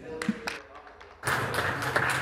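A single sharp tap near the start. About a second in, scattered hand-clapping from members in the chamber begins, with a man's voice coming in over it.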